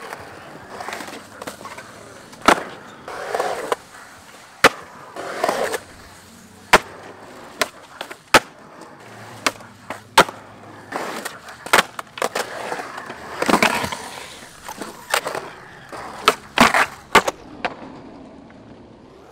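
Skateboard on a concrete skatepark: wheels rolling, with many sharp cracks from tail pops and landings and a few longer scrapes of the board on ledges.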